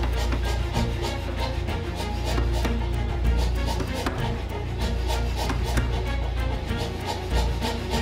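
Power hammer striking a white-hot steel billet in rapid, steady blows, several a second: forge-welding a long mosaic Damascus sword billet. Background music plays underneath.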